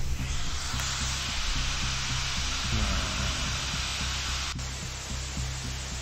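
Loud, even static hiss from the computer over background music with a steady bass line. The hiss drops off abruptly about four and a half seconds in, and a fainter hiss carries on.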